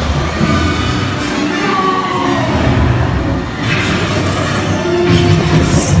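Dark-ride soundtrack playing through the attraction's speakers: orchestral music with a low rumble underneath.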